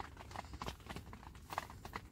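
Irregular small clicks and taps of people eating from plates: fingers and food against the plates, handled close by. A low rumble runs underneath.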